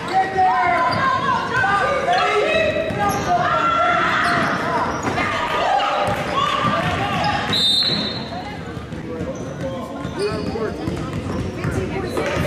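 A basketball being dribbled on a hardwood gym floor during play, with many overlapping shouts from players and spectators echoing in the hall. A short, high referee's whistle sounds about two-thirds of the way in, and the noise drops after it.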